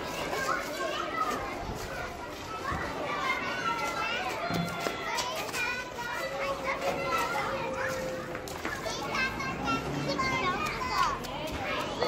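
Many children's voices shouting and calling out over one another at play, with no single voice standing out.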